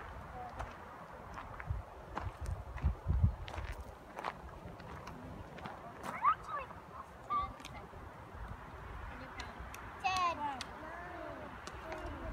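Wind rumbling on the microphone, with faint, wordless voices calling out briefly about six seconds in and again a few times near ten seconds.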